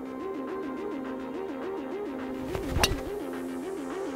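A driver strikes a golf ball off the tee, a single sharp crack a little under three seconds in, over background electronic music with a short repeating riff. It is an absolutely ripped drive.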